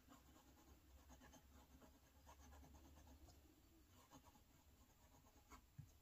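Faint scratching of a fountain pen's steel #6 Bock medium nib writing on Tomoe River paper, with small ticks as the strokes are made and a soft knock near the end.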